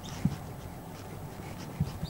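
Marker pen writing on a whiteboard: faint strokes with two light taps, one just after the start and one near the end.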